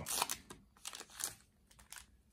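Foil Yu-Gi-Oh! Duelist Pack booster wrapper crinkling in a few short rustles as it is torn open and the cards are drawn out, falling quiet about halfway through.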